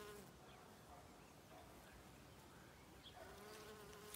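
Faint buzzing of bees foraging on wild rose blossoms. One insect's steady hum fades out just after the start, and another comes back in near the end.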